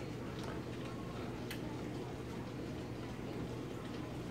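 Steady low hum of kitchen background noise, with a couple of faint clicks.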